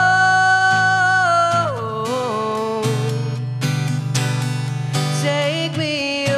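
Live solo song: a young man's voice holds a long sung note, then slides down about a second and a half in and carries on with shorter notes, over a strummed acoustic guitar.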